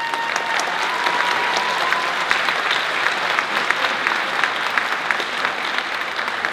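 Audience applauding steadily, with many hands clapping. Over the first two seconds one long high-pitched call, like a whoop, rises and then holds above the clapping.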